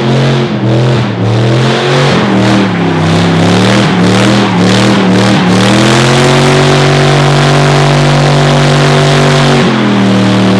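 Dodge Dakota pickup's engine held at high revs in a four-wheel-drive burnout, with all four tires spinning on the pavement. The pitch dips and surges for the first six seconds, then holds steady and high until it drops just before the end.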